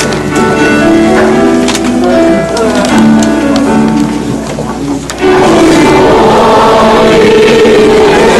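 A hymn. For about five seconds sustained, stepped instrumental notes play, like an introduction. Then, a little after five seconds, many voices singing the hymn come in at once, clearly louder.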